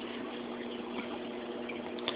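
Reef aquarium running: steady hiss of circulating, bubbling water with a low steady hum under it.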